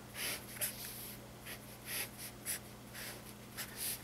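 Marker pen drawing lines on paper: a string of short, irregular scratching strokes, about two a second, over a low steady hum.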